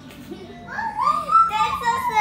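A toddler's long, high-pitched squeal that rises and then falls in pitch, starting about halfway through, over steady background music.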